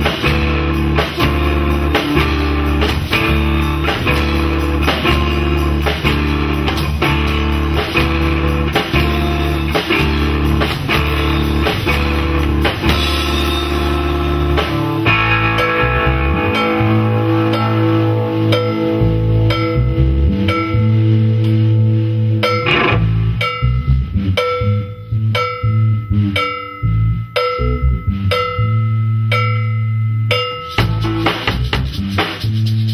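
Live instrumental rock jam by a power trio: a Gibson SG electric guitar, electric bass and drum kit playing together, loud. About halfway through the dense full-band groove thins out into a sparser passage of single held guitar notes over bass and drum hits.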